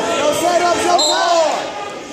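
Spectators and coaches shouting at a youth wrestling bout in a gym. About a second in, one voice rises and falls in a drawn-out yell.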